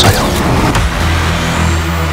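Trailer sound design: a sharp hit at the start, then a low, steady drone that swells toward the end.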